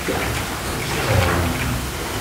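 A steady hiss of background noise, with faint, low murmured voices about a second in.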